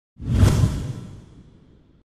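A whoosh sound effect: a rush of noise that swells quickly in the first half second and then fades away over about a second and a half.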